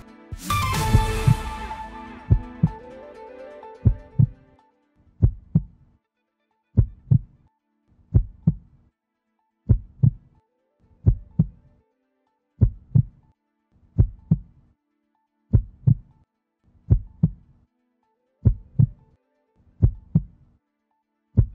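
Closing jingle of a news video: a bright musical hit that rings out and fades over a few seconds, then a low double thump like a heartbeat, repeating about every one and a half seconds.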